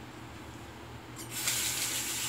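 Bathroom sink tap turned on about a second in, water running steadily into the basin.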